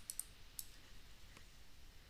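A few faint, sharp clicks against a quiet room: a stylus tapping on a pen tablet during handwriting. Two come close together just after the start, and single ones come later.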